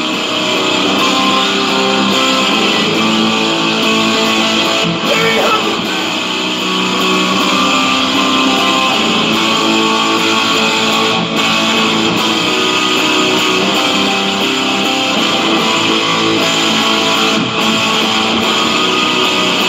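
Electric guitar being played, a continuous run of held notes and chords.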